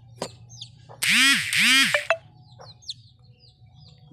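Ring-necked parakeet giving two loud, harsh calls in quick succession about a second in, each rising then falling in pitch.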